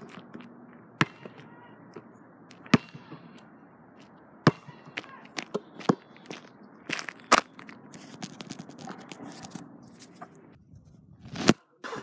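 A basketball bouncing on an outdoor asphalt court: single sharp thuds at irregular intervals, one to two seconds apart, over a steady outdoor hiss.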